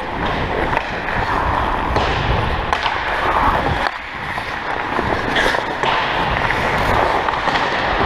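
Ice hockey skates scraping and gliding on rink ice, heard as a steady rush of noise from a player's own camera, with a few sharp clicks about a second in and near three seconds.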